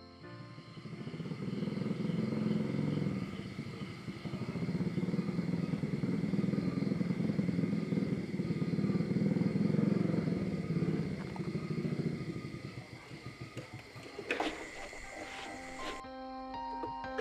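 A small motorcycle engine running as the bike rides closer, growing louder over the first couple of seconds, holding, then dying away about thirteen seconds in. A sharp click follows about a second later.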